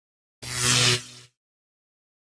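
A short editing sound effect about half a second in: a hissing whoosh with a low hum beneath, swelling for about half a second, then dropping away and stopping after under a second.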